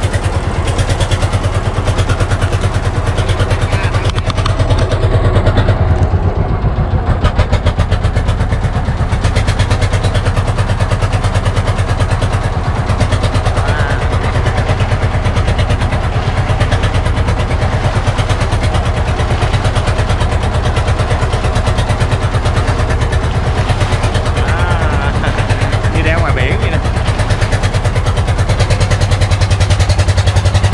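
A wooden river boat's engine running steadily under way, a loud continuous drone, with the wake splashing along the hull.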